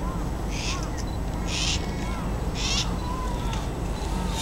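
A bird calling three times, short harsh high calls about a second apart, with faint chirps, over the low murmur of an outdoor crowd.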